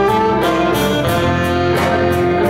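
Live jazz band with alto and tenor saxophones playing held melody notes over a drum kit, the cymbal keeping a steady beat, with electric bass and guitars underneath.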